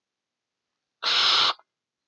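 Dead silence, then about a second in a short half-second hiss of breath from the man, without voice, just before he speaks again.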